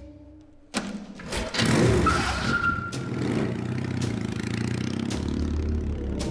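A motorcycle engine starts about a second in, revs up, then keeps running steadily.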